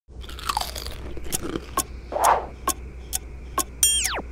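Someone crunching and chewing potato chips, in short separate crunches every half second or so. Near the end, a pitched sound effect sweeps steeply down in pitch.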